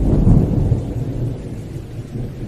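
Thunder and rain sound effect: a loud, deep rumble of thunder that is strongest just after the start and then slowly fades, over steady rain.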